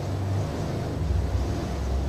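A low, steady rumble and hum, growing a little stronger about a second in.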